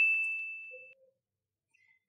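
A single high-pitched ding sound effect marking the on-screen label popping up, ringing and fading out within about the first second.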